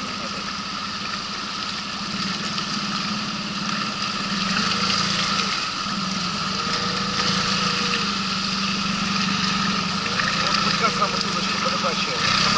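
Water-jet outboard motor on an inflatable boat running steadily under way, pushing upstream through shallow riffles, with water rushing past the hull. The motor grows a little louder a few seconds in.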